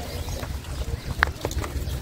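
Footsteps of a group walking on paving and stone steps, over a steady low rumble on the microphone, with one sharp click a little after a second in.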